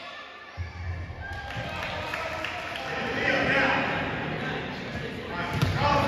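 A basketball bouncing on a gym's hardwood floor, with voices echoing in the hall; a sharper thud comes near the end.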